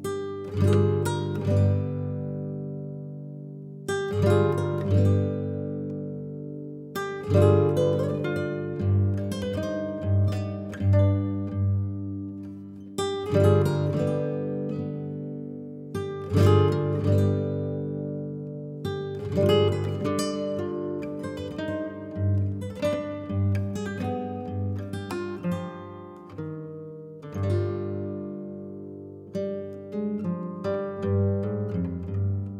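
Background music on acoustic guitar: plucked notes and strummed chords that ring out and fade, with a louder strum every few seconds.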